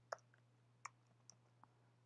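Two faint computer-keyboard key clicks about three quarters of a second apart, then a third fainter one, over a low steady hum.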